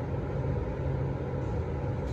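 Steady low hum and rumble of background machinery, unchanging throughout.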